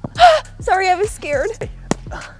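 A woman's breathy gasp, then high-pitched wordless exclamations lasting about a second, over background music with a steady beat.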